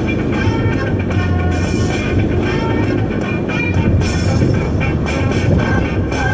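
Music playing, with the low steady hum of a car being driven beneath it.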